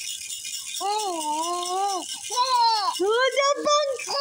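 Baby's toy rattle shaken nonstop, a steady high rattling hiss. From about a second in, long, high, gliding 'ooh' vocal sounds rise and fall over it.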